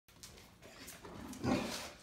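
Large mastiff-type dog making a low, rough vocal sound, a grumbling growl-like call, loudest about a second and a half in, after a few softer sounds.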